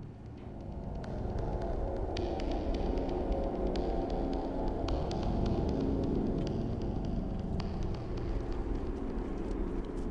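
A low, steady droning hum, with faint scattered ticks higher up.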